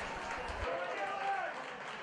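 Faint open-air ambience of a football pitch, with distant voices calling out as players celebrate a goal.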